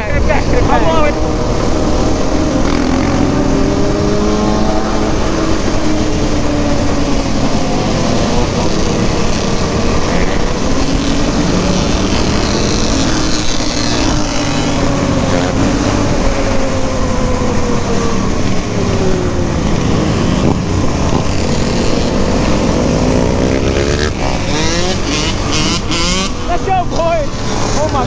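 Sport quad's single-cylinder four-stroke engine revving up and down while riding, with other dirt bikes' engines revving around it and wind noise on the microphone.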